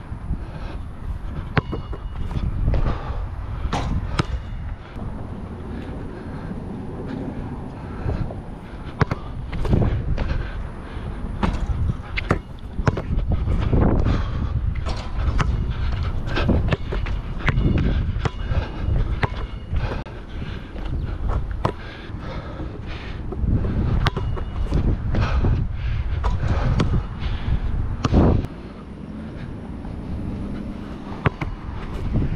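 Gusty wind rumbling on a head-mounted action camera's microphone, with irregular sharp knocks of a basketball bouncing on an outdoor hard court.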